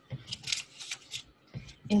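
Paper rustling in a few short crinkles as a sticky note is peeled off and pressed onto a paper chart, with a soft bump about one and a half seconds in.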